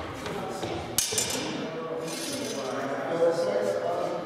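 Two steel training longswords clash sharply about a second in, the blades ringing on afterwards with a bright metallic ping, over voices in a large echoing hall.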